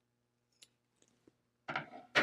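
Faint handling noise from materials being laid on a cutting mat: a few soft, isolated clicks, then a louder brief rustle near the end.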